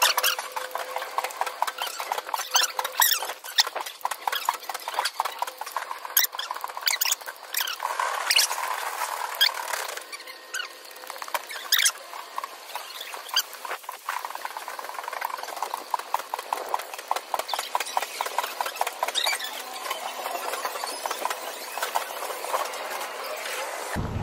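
Small hard wheels of a pushed cart or rolling luggage rattling and squeaking over concrete paving, a fast run of clicks that goes on throughout.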